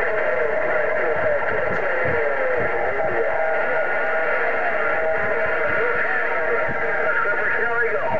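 A President HR2510 radio's speaker receiving a crowded 27.025 MHz channel: several distant stations at once, heard as garbled, overlapping, distorted voices with steady whistling heterodyne tones running through them.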